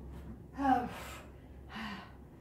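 A woman gasping with exertion during a set of weighted squats and curls. One gasp falls in pitch about half a second in, and a shorter one follows near the end.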